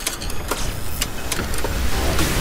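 A deep, engine-like rumble with sharp ticks about every half second, a mechanical sound effect in a promo soundtrack.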